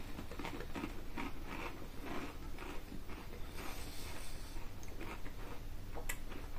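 A person chewing potato crisps with the mouth closed: a run of soft, irregular crunches.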